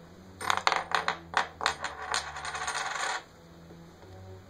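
A metal coin clatters onto the wooden game board and spins, its wobble quickening into a fast rattle that cuts off suddenly as it settles flat in a hole, a little over three seconds in.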